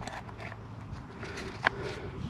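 Quiet handling of a pocket hole jig and its drill bit, with a few small clicks, the sharpest about one and a half seconds in, as the bit is set into the side of the jig to fix its drilling depth.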